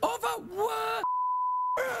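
A broadcast censor's bleep: one steady tone, under a second long, that blanks out a spoken word about a second in, with high-pitched comic speech on either side of it.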